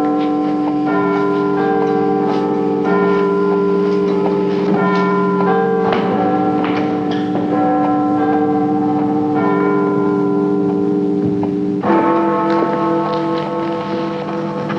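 Bells ringing a slow sequence of notes, each note ringing on and overlapping the next, with a fresh, louder set of strikes near the end.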